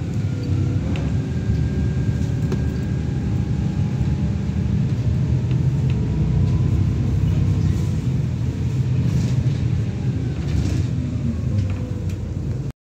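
Stagecoach bus 21257 under way, heard from inside the cabin: a steady low rumble of engine and road, with faint whines that drift up and down in pitch and a few light knocks.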